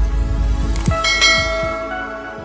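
Intro sting of sound effects: deep falling bass hits, then a short click just before a second in followed by a bell chime of several ringing tones that slowly fade.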